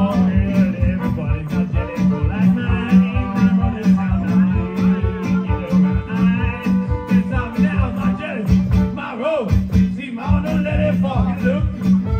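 Live band music: a fiddle bowed over a strummed guitar, with a steady quick beat in the low end.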